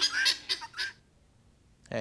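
Chickens and guinea fowl calling in a rapid run of harsh repeated notes, about five a second, that breaks off about a second in.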